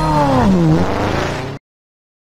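Logo-intro sound effect: a pitched whoosh, like an engine rev, rises and then falls within the first second. A noisy tail follows and cuts off suddenly after about a second and a half.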